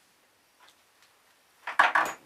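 Near silence, then a quick cluster of sharp metallic clicks near the end as a hand tool works on a bicycle frame's pivot bolt.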